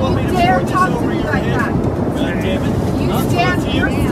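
Passengers arguing with raised voices inside an airliner cabin in flight, over the steady low rumble of cabin and engine noise, recorded on a phone.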